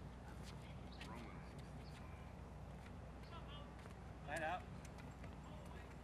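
Footsteps of players walking on a hard outdoor court between rallies, heard as scattered light clicks and taps over a steady low rumble. A brief call from a player's voice comes about four seconds in.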